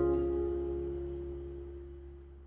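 The last chord of a gentle song dying away, the held notes fading steadily toward silence.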